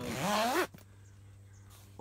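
Zipper on the roof window of a Double Bull Deluxe pop-up ground blind pulled open in one quick stroke lasting under a second, then stopping abruptly.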